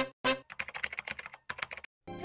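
Keyboard typing sound effect: a fast run of short clicks lasting about a second and a half, following two short brass-like music hits at the start.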